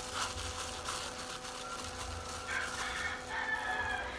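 Soft handling sounds of plastic-gloved hands mixing hair dye in a bowl, over a steady hum. A faint, drawn-out call comes in during the second half.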